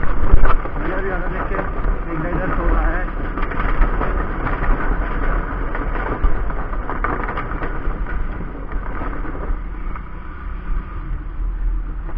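Hero Splendor 100cc single-cylinder four-stroke motorcycle running while ridden across a wooden-planked bridge, with steady wind rumble on the microphone.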